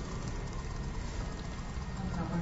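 Low, steady background hiss and hum of the recording with no distinct events: room tone in a pause between spoken phrases.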